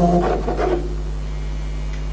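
The tail of a marimba-style phone ringtone melody fades out in the first second, leaving a steady low electrical hum from the sound system.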